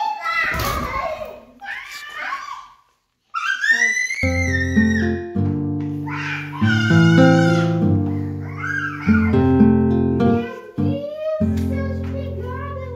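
A heavy thump among voices in the first second, a person falling on the stairs. After a brief cut to silence, background music with steady bass notes and a melody plays to the end.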